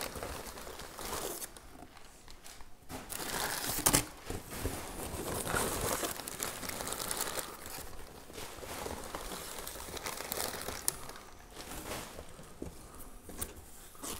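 Crumpled paper packing rustling and crinkling as it is pulled by hand out of a cardboard box, in uneven spells, loudest about four seconds in.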